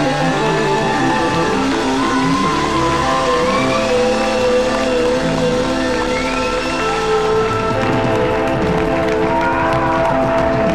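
A live rock band playing with long held chords and a few gliding notes on top, loud and steady throughout.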